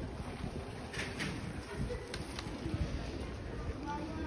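Outdoor city-street ambience: a steady low rumble, with a few faint, short sounds over it.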